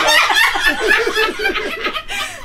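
A person laughing in a quick run of short pulses, about five a second, that fades near the end.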